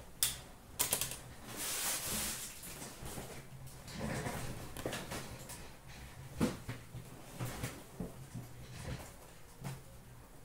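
Sealed hockey card boxes being handled on a glass counter: a few sharp clicks and taps with stretches of rustling, sliding cardboard.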